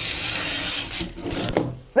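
Scissors slicing through brown pattern paper in one long continuous cut along the dart line, the rasping cut stopping about one and a half seconds in.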